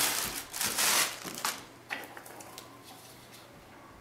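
Plastic packaging rustling and crinkling for about a second and a half as a clear plastic food-processor bowl is unwrapped and handled, followed by a few faint clicks and taps of plastic parts.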